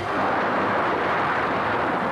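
A loud rushing splash of water as a glider skids onto a lake and throws up spray. It starts suddenly and runs for about two seconds as a steady rush.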